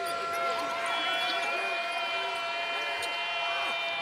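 Basketball game sound on a hardwood court: sneakers squeaking in short chirps and a ball bouncing, over a steady held tone that runs without a break.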